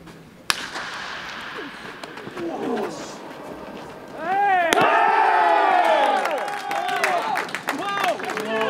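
A baseball bat cracks on the ball about half a second in, then players' voices rise; a second sharp smack comes near the middle, and a group of players break into loud yelling and cheering at a great defensive play.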